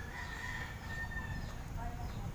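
A rooster crowing: one long held note that fades out about one and a half seconds in.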